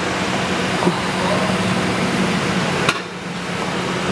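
Indistinct voices of people over a steady low hum, with a light click just under a second in and a sharper click about three seconds in.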